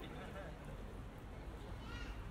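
Busy pedestrian street ambience: indistinct voices of passersby over a steady low city rumble, with a brief higher-pitched voice near the end.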